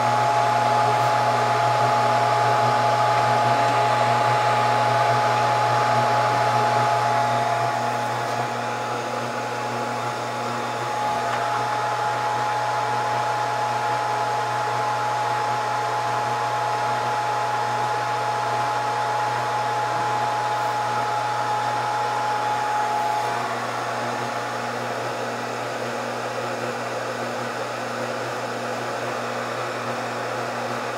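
Scotle IR360 rework station running its preheat stage, with a steady blowing hum from its hot-air heater blower and fans. A steady whine rides on the hum and fades out about three-quarters of the way through.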